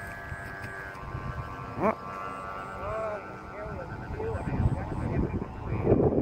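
Bamboo flutes on Vietnamese flute kites (diều sáo) sounding in the wind: several steady whistling tones held together.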